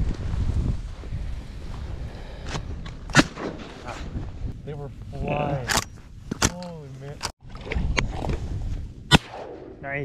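Two shotgun shots, each a single sharp crack, about six seconds apart, with the second the loudest. Wind noise runs low underneath.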